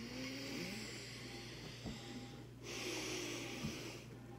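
A man breathing heavily and groaning in disgust after a spoonful of Vegemite: two long, hissing breaths with a low groaning voice under them, the first breaking off about two and a half seconds in.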